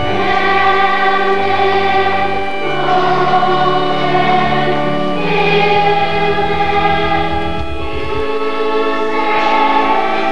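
Choir singing, with long held notes that change every few seconds.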